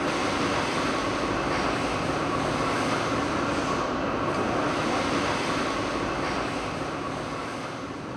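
Steady industrial rushing noise of a steel mill's billet reheating furnace, with a faint steady tone running through it, easing slightly near the end.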